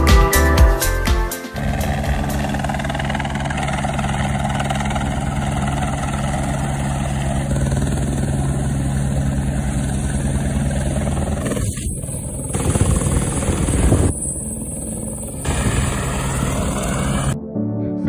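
A helicopter hovering low overhead, its rotor making a steady thrum over a haze of rushing air from the downwash.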